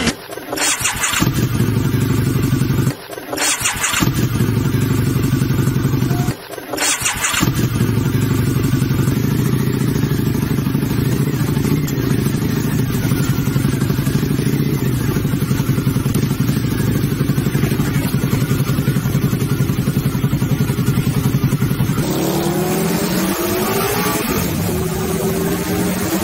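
Motorcycle engine running with a fast, even beat, dropping out briefly twice in the first seven seconds and picking up again. In the last few seconds rising and falling pitched sounds come in over it.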